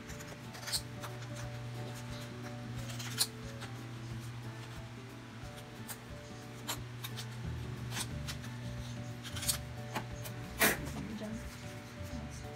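Scissors cutting through a sheet of printer paper: several short, crisp snips at uneven spacing, the loudest about three seconds in and near the end, over soft background music.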